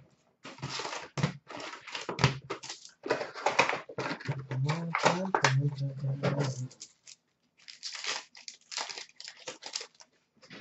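A hobby box of trading cards being opened and its foil card packs pulled out and stacked, making crinkling and rustling of foil wrappers and cardboard. The run is dense for about the first seven seconds, then thins to scattered crackles.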